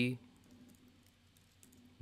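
A few faint, scattered keystrokes on a computer keyboard over quiet room tone.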